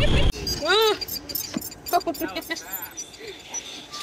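Wind buffeting the microphone on a fast open-air ride vehicle, cut off suddenly a moment in. It is followed by a short rising-and-falling vocal exclamation, then scattered clicks and rattles with faint voice sounds.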